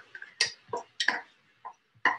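About five irregular sharp clicks and taps of utensils against dishes and a lunch container as food is packed into it.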